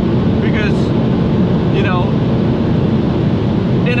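Steady, loud cabin drone of an Audi S3 8P at about 270 km/h: wind, tyre roar and the turbocharged four-cylinder engine blended into a constant rumble, with no gear change or rev change.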